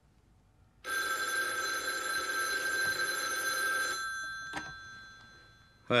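Old-fashioned desk telephone's bell ringing in one continuous ring of about three seconds, then dying away, with a single click as it fades.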